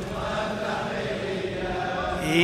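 A large crowd of men chanting a mourning latmiyya refrain together in unison, the sustained tones of many voices blending.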